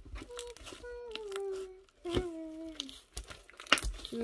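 Slime being pressed to burst its air bubbles, with small crackling pops and clicks. Two drawn-out, slightly falling tones also sound, one for about a second and a half and a shorter one about two seconds in.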